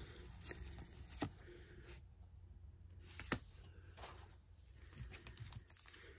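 Faint, scattered clicks and taps of trading cards being handled in the hand, the sharpest a little over three seconds in.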